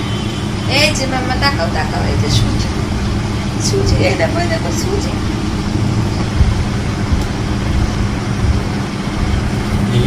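A steady low rumble with a constant low hum, with a few short spoken words over it.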